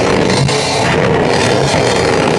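Rock band playing loudly live, with a drum kit driving the music.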